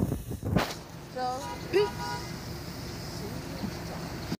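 Two short, high-pitched voice calls about a second in, over steady outdoor background noise.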